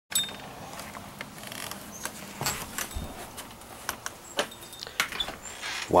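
Camera handling noise: irregular light clicks and knocks, with a few rubbing sounds, as the camera is handled and carried.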